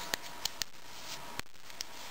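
A duct-tape-wrapped plastic zip bag being handled, giving a few short crinkles and clicks. The sharpest comes about one and a half seconds in.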